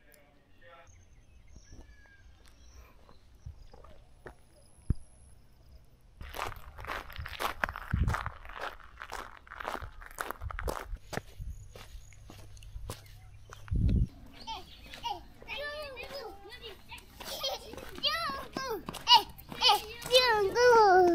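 Young children's voices calling out in high, sliding tones, growing louder over the last few seconds: kids shouting 'muzungu', a greeting called out to a foreigner. Before that it is quiet, then voices and clicks come in about six seconds in.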